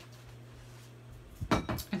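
A thick shake being drunk through a straw from a cup: a steady low hum, then about one and a half seconds in a short burst of sucking and cup-handling noise.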